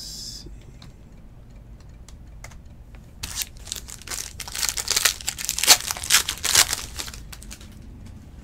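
A foil trading-card pack wrapper (2017-18 Cornerstones basketball) is torn open and crinkled by hand. The crinkling starts about three seconds in, is loudest in its second half, and lasts about four seconds.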